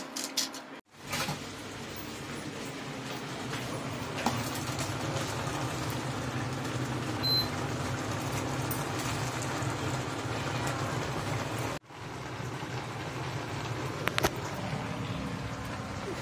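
Steady low hum with a hiss in a kitchen while greens cook in an open pot on a gas stove. The sound drops out briefly twice, about a second in and again near twelve seconds.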